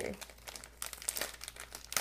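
A packet of dried nori seaweed sheets being handled and a sheet pulled out, with irregular crinkling and crackling that thickens about a second in; the brittle sheet is flaking as it is handled.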